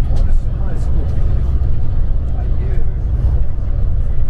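Steady low rumble of a coach's engine and tyres, heard from inside the passenger cabin as it drives along the road.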